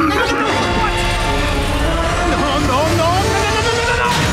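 Dramatic film score over a steady low rumble, with warbling, chirp-like calls bending in pitch, clearest between about two and a half and three seconds in.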